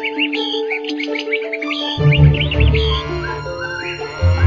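Rapid bird chirping, a sound effect, over light background music; the chirps die away near the end, and a low bass line joins the music about halfway through.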